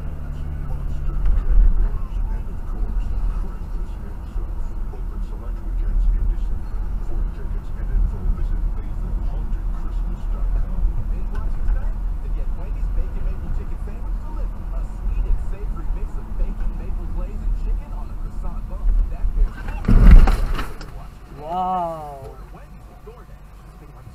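Low, steady rumble of a car driving, heard from a dashcam inside the cabin. About twenty seconds in there is a loud, sudden noise lasting under a second, followed just before the end by a short cry from a person's voice that rises and falls.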